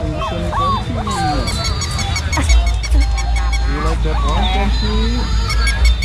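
Busy night-market din: overlapping voices and squeaky gliding calls over music with a quick, regular pulse of about five beats a second.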